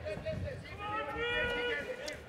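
Arena crowd noise with a voice calling out in the background, one long held call about a second in.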